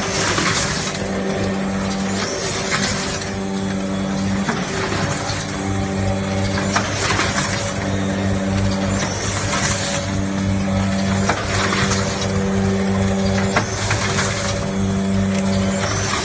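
Multi-head weigher and rotary pouch packing machine running: an electric buzz that switches on and off in short blocks, with a hiss repeating about every two and a half seconds as the machine cycles.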